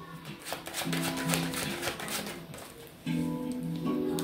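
Background music with sustained notes, over a rapid run of small clicks from a deck of tarot cards being shuffled by hand during the first three seconds.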